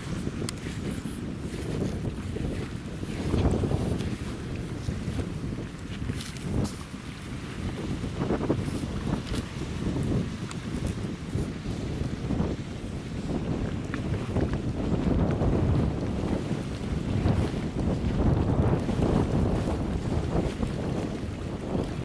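Wind buffeting the camera microphone on an open seashore: a low rumble that swells and fades in gusts, stronger in the second half.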